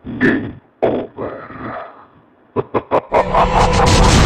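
Sound effects of a TV show's closing ident: two short distorted vocal sounds, then a quick run of sharp clicks about two and a half seconds in, then music with a heavy low beat starting about three seconds in.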